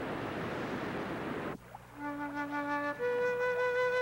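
Waterfall rushing, cut off abruptly about one and a half seconds in. About half a second later, slow background music of long held notes begins.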